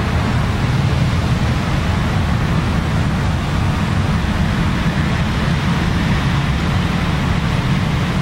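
Steady background noise: an even rush with a low hum beneath it, unchanged throughout and with no distinct knocks or taps.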